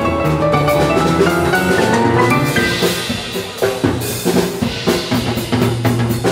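A live drum kit playing a busy passage of snare, bass drum and cymbals, with piano notes under it in the first half. A cymbal crash comes about four seconds in.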